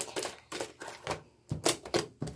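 Sticky, over-soaped white slime being squeezed and pulled apart by hand, giving an irregular run of sharp clicks and pops, several a second.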